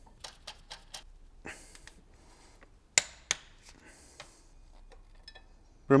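Metal hand tools and a cam timing tool clicking and clinking against a V8's cam gears and cylinder head in short scattered taps, with two sharp metallic knocks about three seconds in, the loudest sounds.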